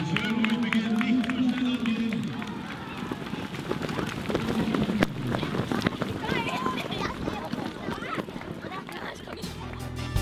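Many runners' footsteps pattering on a rubberised running track as a large field passes close by, a dense run of short footfalls, with spectators' voices and calls over them.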